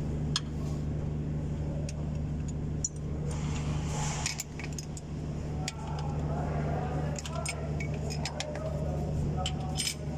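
Scattered sharp metallic clinks and taps of a hand working tools and parts behind an engine's cooling fan, over a steady low hum.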